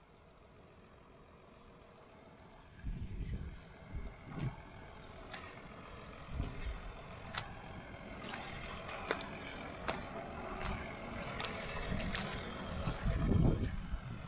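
Irregular footsteps squelching and sloshing through wet mud and liquid manure, beginning about three seconds in and getting busier toward the end, with scattered sharp clicks.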